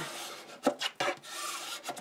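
A ruler rubbed firmly over cardstock inside a box, pressing glued tabs flat: a scratchy scraping, with a few light taps about halfway through.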